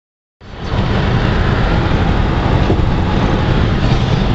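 Steady road noise inside a car's cabin at highway speed, mostly a low rumble, coming in about half a second in.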